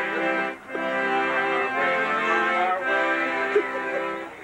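Polka band music with long held chords, dipping briefly about half a second in.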